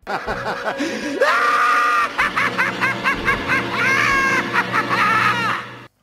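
Animated Joker character laughing loudly. The laugh rises in pitch about a second in, then runs as rapid cackling bursts, several a second, and cuts off suddenly just before the end.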